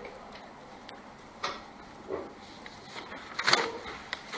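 Sheets of paper rustling as they are handled, in a few short rustles, the loudest one near the end.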